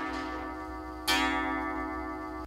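Pendulum wall clock striking on its gong: one stroke is still ringing as a second lands about a second in, each a bright ringing tone with many overtones that slowly dies away.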